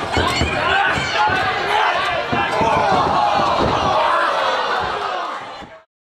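Wrestlers' bodies slamming onto the ring mat in repeated thuds, under shouting voices and crowd noise. The sound fades out just before the end.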